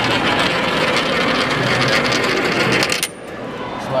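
A coin rolling around a spiral coin-donation funnel, a steady rolling whirr that stops suddenly about three seconds in as the coin drops through the centre hole.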